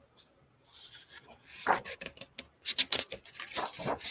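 A page of a large hardback picture book being turned by hand: irregular paper rustling and rubbing with a few small taps, starting about a second in.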